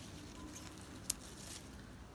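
Quiet background hiss with one short, sharp click a little past halfway.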